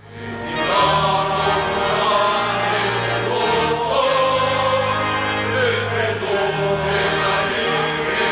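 Sacred choral music: a choir singing long held notes over a sustained low bass, swelling in within the first second.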